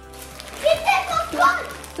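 Speech: a voice saying "two" about a second in, over soft background music.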